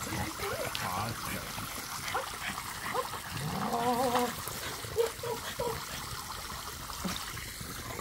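Water from the jets of an inflatable sprinkler splash pad spraying and pattering into its shallow pool as a French bulldog splashes in it. A few short vocal sounds break in, the longest rising and falling about three and a half seconds in.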